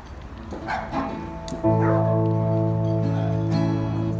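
An amplified guitar through the stage speakers: about one and a half seconds in a chord comes in suddenly and rings on steadily, its notes shifting slightly about three seconds in. Before it, only a few scattered short sounds as the players get ready.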